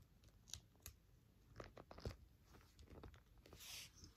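Faint sounds of mounting tape being unwound from its roll and pressed down onto canvas: scattered small ticks and crackles, with a short peeling hiss near the end.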